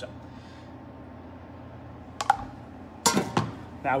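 Stainless steel kitchen pans and utensils being handled on a counter: one sharp clink a little past two seconds in, then a louder clatter of metal about three seconds in.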